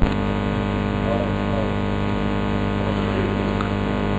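Steady electrical mains hum with many overtones in the sound system, cutting in suddenly with a click and holding at an even level.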